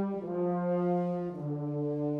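Concert wind band playing sustained brass chords; the harmony moves to a new chord about a quarter-second in and again about a second and a half in.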